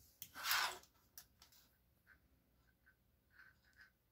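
Quiet handling of knitting needles and plastic stitch markers as stitches are slipped along and counted. There is a short soft rustle about half a second in, then a few faint clicks.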